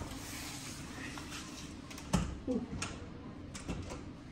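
A balcony door's handle and latch being worked: a few sharp clicks and knocks, the loudest about two seconds in, over a steady low hum.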